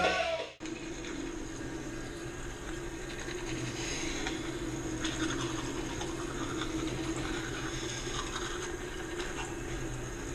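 Music cuts off about half a second in, leaving a steady rush of running water in a small tiled bathroom.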